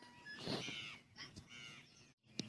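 A crow cawing faintly, about three caws.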